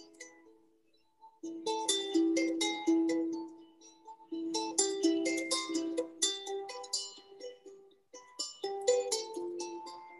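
A plucked string instrument playing a melody in short phrases, with pauses about a second in, around four seconds in and just before eight seconds in.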